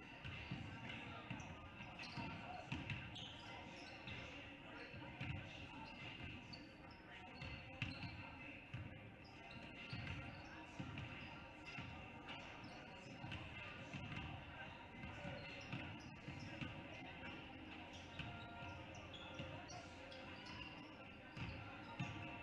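Several basketballs bouncing irregularly and overlapping on a hardwood gym floor, echoing in a large gym, with indistinct voices in the background.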